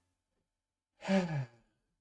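A man's short voiced sigh, falling in pitch, about a second in, after a second of silence.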